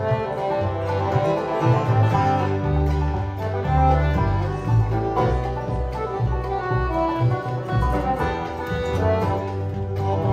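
Live band playing an instrumental tune, with a moving bass line under a dense melody line.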